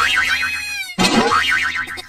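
A cartoon 'boing' sound effect heard twice, the second starting about a second in. Each is a wobbling twangy tone that slides down in pitch.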